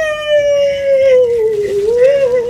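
A boy's long, pained groan: one drawn-out note that slowly sinks in pitch and lifts slightly near the end.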